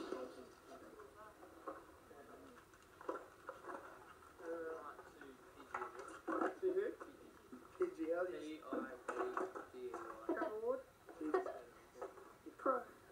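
People talking, the voices thin and muffled, played back from a VHS tape through a TV speaker.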